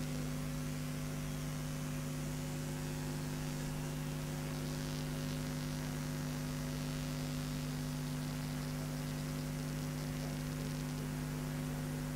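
Steady electrical mains hum, a low buzzy drone with a faint hiss above it, unchanging throughout.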